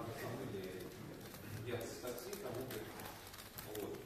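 A man's voice speaking through a lecture hall's public room acoustics, heard at a distance and echoing.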